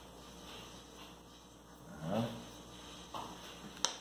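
Quiet spooning of mashed-potato filling onto a crepe, ending with a single sharp clink as the metal spoon is set down in the metal pot of filling.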